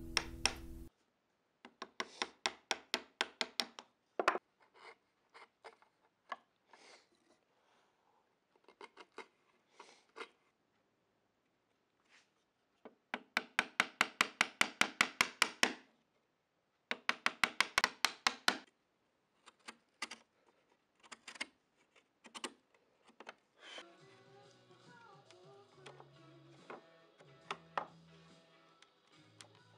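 Chisel chopping a small notch in a wooden rail: bursts of rapid light taps, about five a second, separated by pauses. Acoustic guitar music stops about a second in and comes back quietly near the end.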